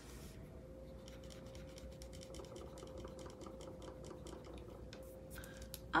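Eraser rubbed quickly back and forth on a paper card, erasing gel-pen ink: faint, quick scratchy strokes, about six a second, stopping shortly before the end.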